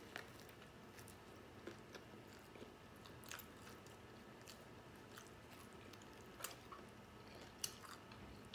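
Faint chewing of a mouthful of a soft-roll turkey and bacon sub sandwich, with a few soft mouth clicks scattered through.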